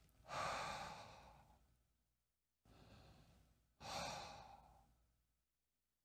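A man breathing out twice through an open mouth: slow, warm 'fog up a window' exhales, the relaxed open-throat air of a brass-breathing exercise. Each breath is a soft hiss that fades over about a second, the first just after the start and the second about four seconds in.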